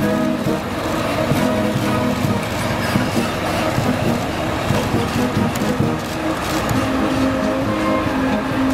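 Heavy police trucks and buses, including water cannon trucks, driving past slowly in a column, their engines running, with march music playing along.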